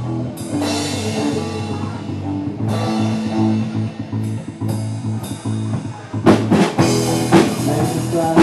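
Live rock band playing an instrumental passage: electric guitar chords struck and left ringing, with the drum kit coming in hard about six seconds in.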